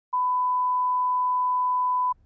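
Broadcast line-up tone: a single steady pure beep at 1 kHz that begins a moment in and holds unbroken at one level and pitch. It is the reference tone that goes with colour bars at the head of a programme tape.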